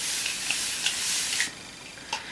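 Aerosol water spray misting the face in a steady hiss that cuts off about a second and a half in.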